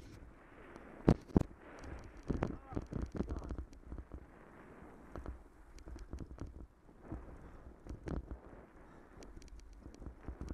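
A bicycle ridden over a rough, potholed gravel track: tyres crunching and the frame and chain rattling, with sharp knocks as the wheels hit bumps, the two hardest about a second in and a cluster more a second or two later.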